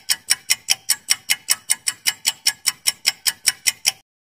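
Countdown-timer clock ticking sound effect, about five sharp ticks a second, counting down the time to answer a quiz question.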